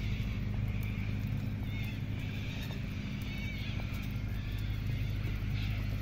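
Outdoor ambience while walking: a steady low hum with light, irregular footstep clicks and a few faint, short chirps about two and three and a half seconds in.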